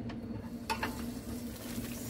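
Food frying in a pan while being stirred with a utensil, with a couple of light clicks a little before halfway through.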